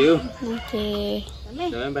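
A rooster crowing, its call ending in a held note that stops a little over a second in, with people's voices around it.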